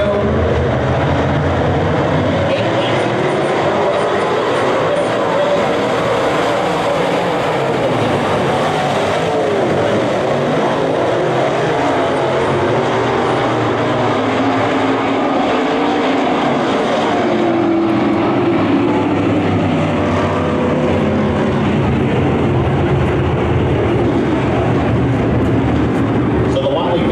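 A field of USRA Modified dirt-track race cars running at speed, their V8 engines blending into one steady, loud sound.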